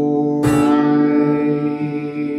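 Acoustic guitar strummed, with a long held sung note over it; a fresh strum comes about half a second in.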